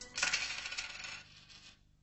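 A bright metallic ringing, struck just after the start and fading away over about a second and a half.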